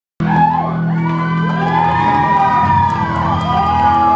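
Audience cheering and whooping, many voices with overlapping rising-and-falling whoops, over music with a steady low tone.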